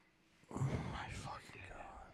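A man whispering or letting out a breathy exclamation close to the microphone, starting about half a second in and lasting about a second and a half.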